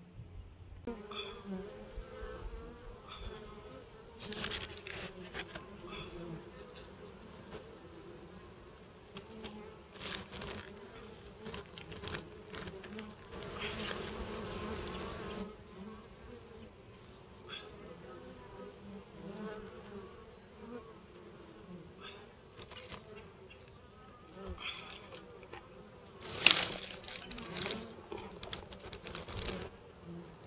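Honey bees buzzing around an open wooden hive, a steady wavering hum with bees flying close past. Over it come scattered knocks and rustles of the hive lid and paper being handled, the loudest a sharp knock near the end.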